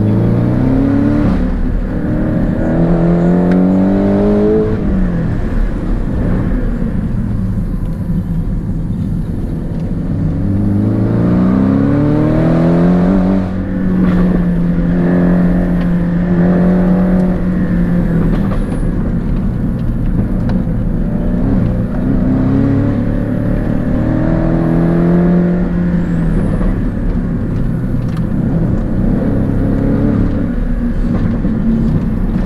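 Porsche 718 Cayman GTS engine heard from inside the cabin under hard driving. The revs climb in three pulls, at the start, about ten seconds in and again past the middle, each dropping off as the driver lifts. A steady held note comes between the pulls.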